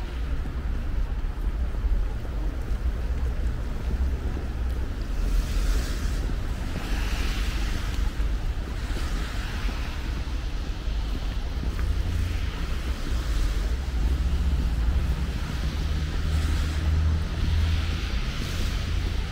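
Street traffic on a wet road: a steady low rumble of engines, with the hiss of tyres on wet asphalt swelling and fading as cars pass, most clearly in the middle and near the end.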